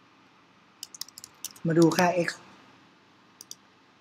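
Computer keyboard keys clicking as code is typed: a short quick run of keystrokes about a second in, then two more clicks near the end.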